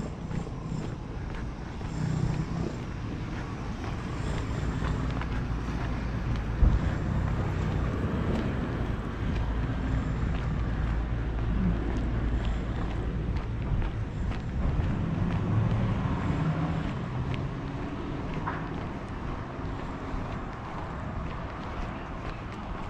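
Outdoor street ambience: a low rumble of vehicle traffic, swelling through the middle and easing near the end, with wind buffeting the microphone.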